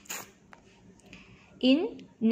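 A pause in a woman's speech: a brief hiss just after the start, then one short spoken word near the end.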